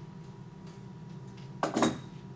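Small metal pliers set down on a wooden cutting board: a brief double clatter near the end, over a steady low hum.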